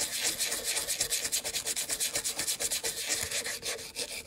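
Toothbrush bristles scrubbing a wet, cleaner-soaked amplifier eyelet board in quick back-and-forth strokes: a rapid, even, hissing scrub.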